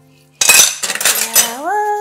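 Dishes dropped at a kitchen sink: a sudden loud crash of crockery about half a second in, clattering for about a second. It is followed by a short rising vocal cry.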